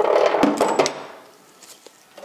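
Handling noise of metal tools and a rusty part: clattering and scraping with a few sharp clicks for about a second, then fading away.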